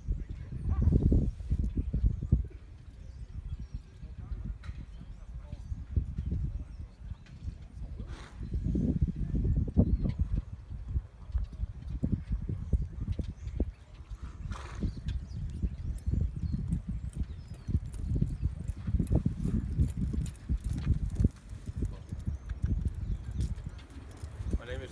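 Hoofbeats of a saddled mustang walking over soft, sandy corral dirt, a steady run of dull low thuds.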